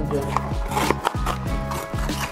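Background music with a steady beat and held tones, with a few short clicks over it in the first second.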